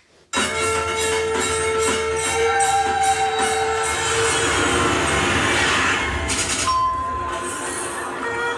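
A film trailer's soundtrack cutting in abruptly: busy street noise mixed with music and long held tones.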